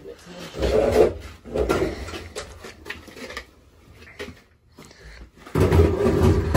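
Knocks, clicks and rubbing of metal pipe fittings being handled and pushed into place on a gas boiler. A much louder sound cuts in near the end.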